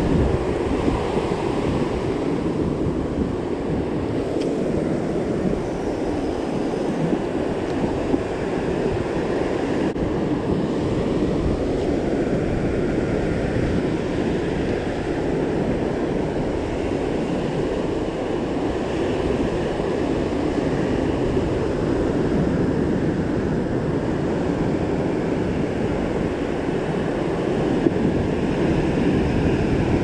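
Ocean surf breaking and washing up a sandy beach in a steady rush, with wind buffeting the microphone.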